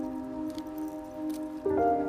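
Soft background music: a sustained chord that slowly fades, then a new chord comes in near the end.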